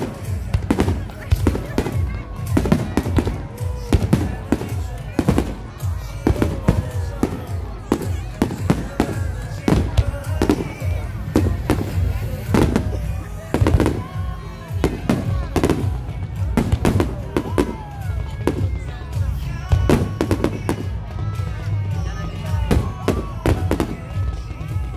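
Fireworks display bursting overhead: a near-continuous string of sharp bangs, one to three a second, with no pause.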